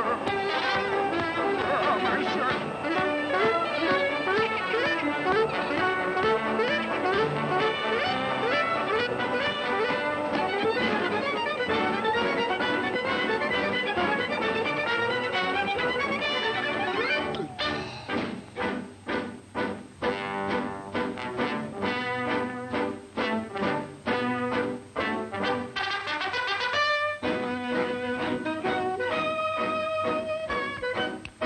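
Orchestral cartoon score with brass, busy and continuous for the first half, then turning into short, choppy notes with gaps between them a little past halfway.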